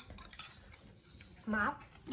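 Wooden chopsticks lightly clicking against dishes as food is picked up and moved to a sauce bowl. There is one sharp tick at the start and a few faint ones just after.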